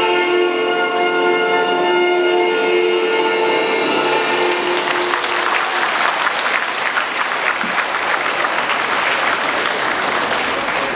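Accompaniment music of long held tones fades out about halfway through, and an audience breaks into applause that carries on to the end.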